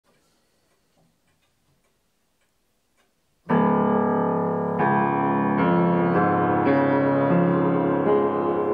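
1931 B. Sommerfeld upright piano being played. Faint clicks give way, about three and a half seconds in, to a loud, sustained chord, and new chords follow roughly every second.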